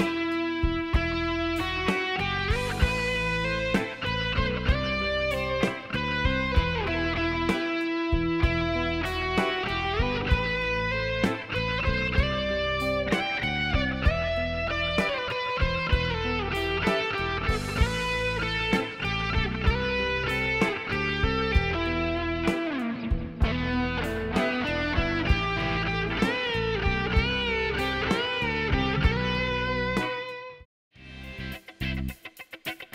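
Background music led by electric guitar, with a steady beat.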